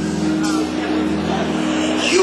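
A live band holding a steady low chord between sung lines, under a dense noisy wash of crowd and hall sound, as heard from far back in a large concert hall.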